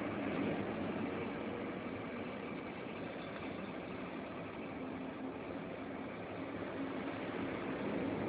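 Steady drone of heavy industrial machinery, an even rushing noise over a low hum, easing a little in the middle and building again near the end.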